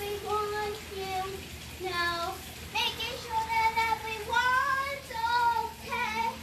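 A young girl singing a melody in long held notes, with short breaks between phrases and a few upward slides in pitch.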